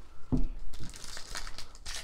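Wrapper of a 2023 Bowman baseball card pack crinkling as it is torn open by hand. The crackling starts about half a second in.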